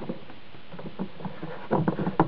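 Clear plastic inlet water filter being screwed by hand onto the plastic water inlet of a Karcher K5 Compact pressure washer: faint clicks and scrapes of the threads and fingers, louder near the end, over a steady background hiss.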